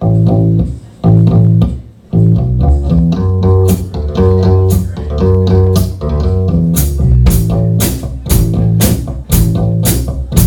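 A live rock band, with electric guitar and bass guitar, starts a song with three loud chords about a second apart, broken by short gaps, then plays on without stopping. Drums come in with cymbal strokes in the second half, about two a second by the end.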